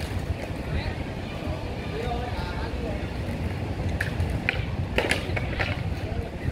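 Inline skate wheels rolling over stone paving tiles with a low rumble, with a few sharp clacks of the skates on the ground about four to five seconds in. Faint voices in the background.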